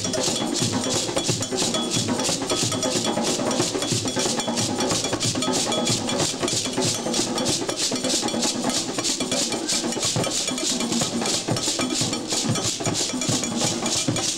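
An ensemble of djembe-style hand drums playing a rhythm, with a fast, steady, high-pitched repeated stroke riding over the drumming.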